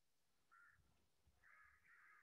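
Near silence, with a few faint animal calls in the background: one short call about half a second in, then a run of calls in the last half.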